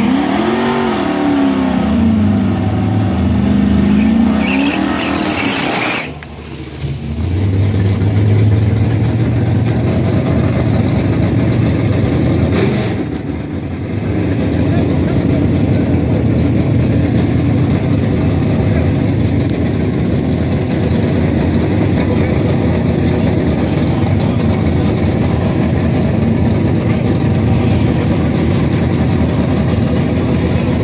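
A Dodge Charger R/T's 5.7-litre Hemi V8 revved twice, each rev rising and falling in pitch. About six seconds in the sound breaks off, and a steady Hemi V8 idle carries on.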